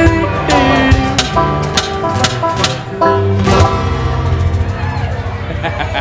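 Live acoustic string band of upright bass, acoustic guitar and cajón playing the closing bars of a bluegrass-style song, with sharp percussion hits; a final chord is struck about three seconds in and rings down as the song ends.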